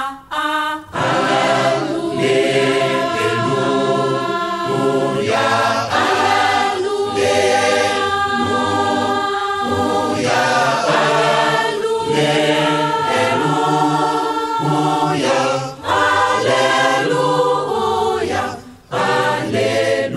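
A choir singing a Kimbanguist religious song, with short breaks between phrases about four seconds and about one second before the end.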